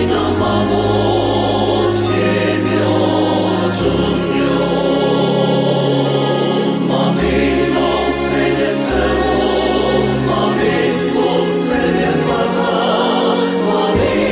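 Mixed choir of men's and women's voices singing in Twi, in several parts, over sustained low bass notes that change every few seconds.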